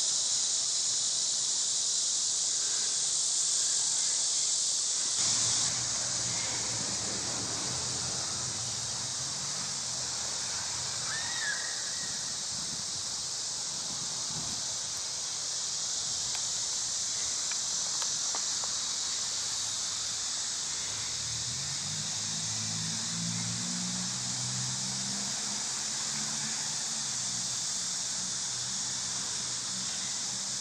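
Steady, high-pitched drone of an insect chorus. A lower hum comes in about five seconds in, fades, and returns about twenty seconds in.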